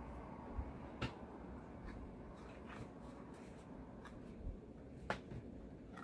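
Faint handling of a cardboard candy box and its paper insert: quiet rustling with a few short, sharp clicks, the clearest about a second in and again near the end.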